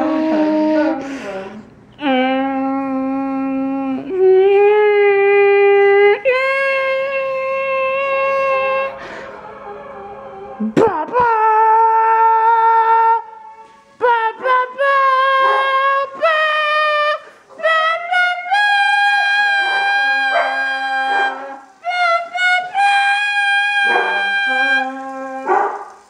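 Voices singing long held notes, each sustained for a second or more at a new pitch, with a second voice joining in on some notes in the second half. Someone says afterwards that they started too high.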